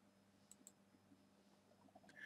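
Two faint clicks of a computer mouse button, about a fifth of a second apart, over near silence.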